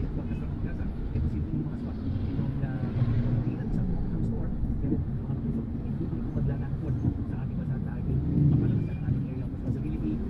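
Car in slow traffic, heard from inside the cabin: a steady low engine and road rumble, with a voice talking over it.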